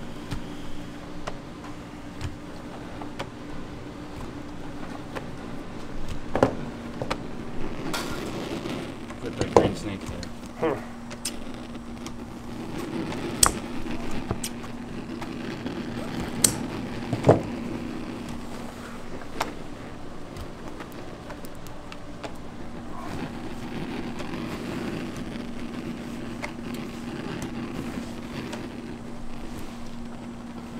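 Steady low hum of candy-kitchen equipment, with scattered sharp clicks and knocks from hard candy being worked by hand and cut with scissors.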